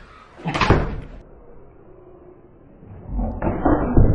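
A small soccer ball thrown at a plastic water bottle standing on a rolled sleeping bag: a sharp thud about half a second in, then a longer, louder knock and rustle near the end as the bottle is hit and tips.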